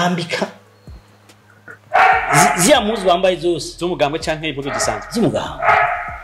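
A man speaking animatedly. There is a brief phrase at the start, a pause of about a second and a half, then continuous talk.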